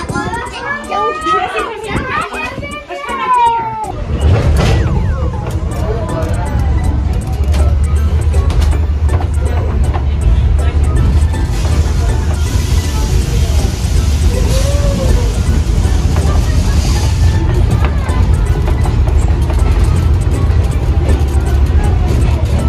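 Voices for the first few seconds, then a loud, steady low rumble from about four seconds in: an excursion train coach with open windows riding along.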